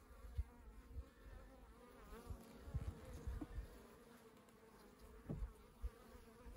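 Faint, steady hum of a honeybee colony buzzing over the top bars of an open hive, with a few short low thumps.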